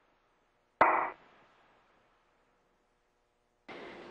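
A short burst on a space-to-ground radio loop, about a second in: a sharp click as the channel keys, then a brief squawk lasting a fraction of a second. Near silence on either side, with a faint hiss coming in near the end.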